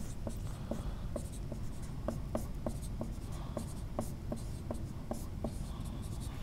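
Dry-erase marker writing on a whiteboard: a steady run of short squeaks, about three or four a second, as letters are stroked out.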